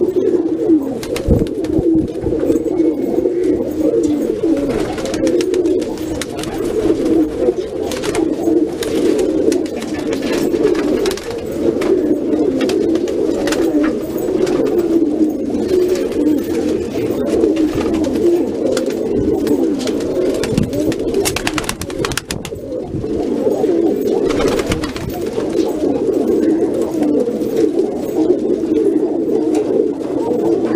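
Shirazi pigeons cooing, many birds overlapping in a continuous low cooing chorus, with scattered small clicks among them.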